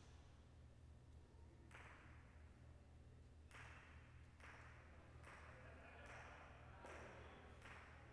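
Near silence: faint room tone of a large hall with a low steady hum, and a series of faint knocks with a short echo, about one a second in the second half.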